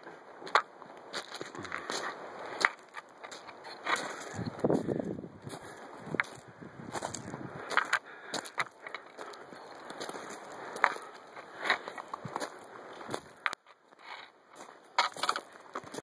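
Hiking footsteps crunching on a gravel trail: irregular sharp crunches about every half second to a second, over rubbing from the hand-held camera.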